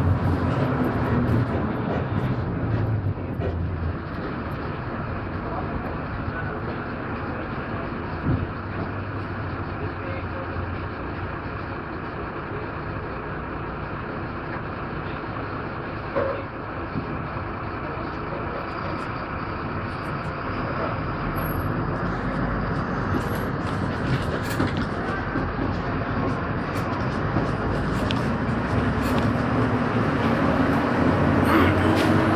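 Cabin noise inside a moving bus: a steady engine and road rumble with a couple of sharp knocks about a third and halfway through. It grows louder over the last third.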